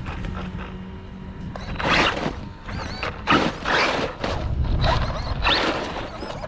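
Traxxas Maxx RC monster truck driving on loose mulch and dirt: several bursts of tyres scrabbling and throwing debris, with short high electric-motor whine as the throttle is blipped.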